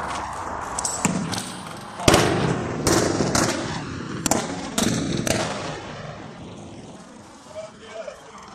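Rifle shots in quick, uneven succession, about seven sharp reports between one and five and a half seconds in, the loudest about two seconds in, each with a short echo off the building.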